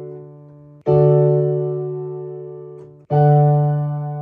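Digital piano playing D major chords in different inversions, held and left to fade. A new chord is struck about a second in and another about three seconds in, over the dying tail of the one before.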